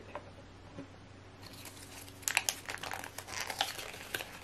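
Plastic packaging crinkling and crackling in someone's hands, starting about two seconds in.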